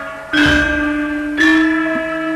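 Javanese gamelan: bronze keyed metallophones struck in a slow melody, two notes about a second apart, each note ringing on into the next.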